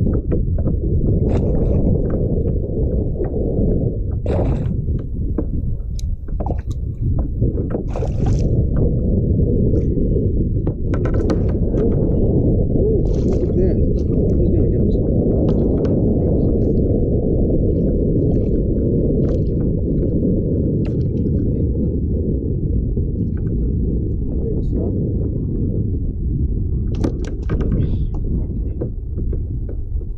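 Steady low wind rumble on an action camera's microphone on an open kayak, with scattered short clicks, knocks and splashes of water and gear around the boat.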